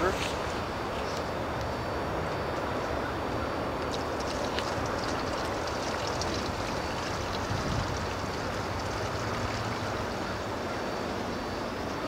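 Water pouring steadily from a plastic jug into the reservoir of a Groasis Waterboxx.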